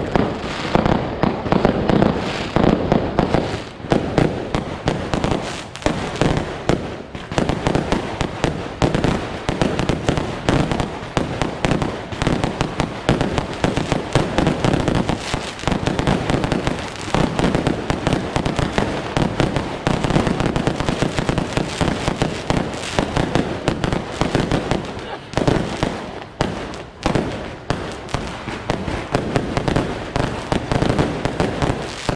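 Strings of firecrackers going off in a loud, continuous rapid crackle of bangs, dipping briefly a few times.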